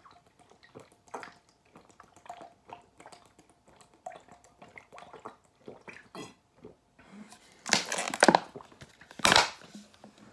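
Drinking water from a plastic bottle: a run of soft gulps and swallowing clicks, a few a second. Near the end, two loud bursts of handling noise, the second shorter than the first.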